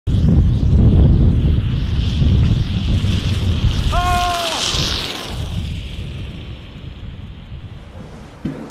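A sled scraping and hissing down an ice-crusted slope, with wind rumbling on the microphone; the hiss swells as the sled passes close and a short high whoop rings out about four seconds in. The noise then fades away.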